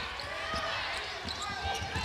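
Basketball being dribbled on a hardwood court, a few dull thumps, over the murmur of the arena crowd and faint voices.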